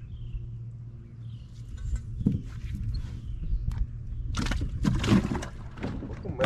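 Rustling and knocking of fishing gear being handled on a boat deck, with a loud rustle about four and a half to five and a half seconds in, over a steady low hum.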